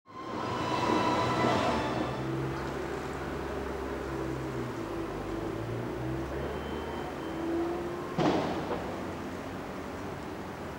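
Vehicle noise on a street: a steady low rumble with held whining tones, and a sudden clank about eight seconds in.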